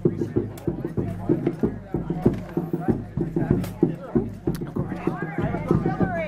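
Fast, steady drumming over a low steady hum, with people talking in the background.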